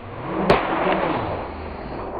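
A paper poster being burst through: a swelling rush, a sharp crack about half a second in as the paper rips open, then a short rush of tearing that fades.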